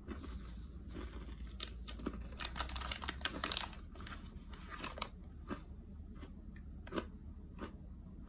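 Clear plastic snack wrapper crinkling and rustling as it is handled, in a dense run of crackles over a few seconds, followed by a few separate light knocks.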